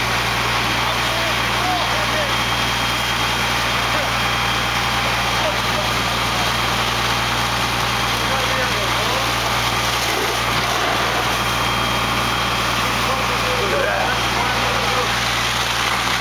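Fire apparatus engines running steadily in a loud, unbroken rumble, with faint, indistinct voices underneath.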